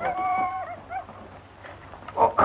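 A dog's drawn-out whine lasting under a second, dropping in pitch at the end, followed by a short second whimper about a second in.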